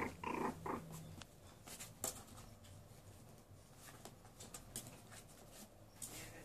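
A short, pitched dog vocalisation in about the first second, then faint scattered clicks and smacks from puppies suckling at their mother.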